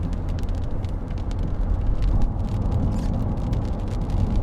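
Steady road noise inside a car's cabin while driving on a wet freeway: a low rumble of tyres and engine, with many faint ticks scattered through it.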